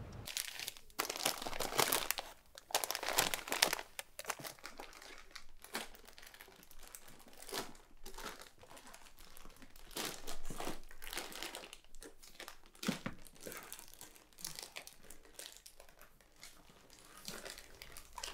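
Paper or plastic packaging being handled, rustling and crinkling in irregular bursts of short crackles that come and go.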